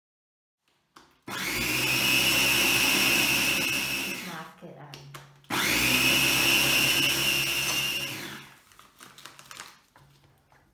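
Small electric food chopper grinding dried roasted chillies into powder in two bursts of about three seconds each. Its motor whines up to speed at the start of each burst and winds down as it stops.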